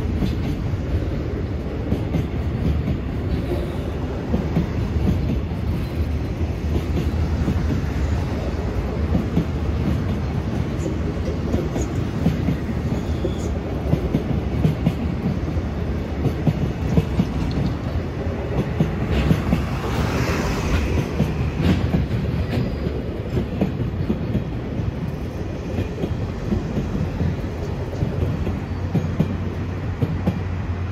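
A long container freight train's wagons rolling past, a steady rumble of steel wheels on the rails.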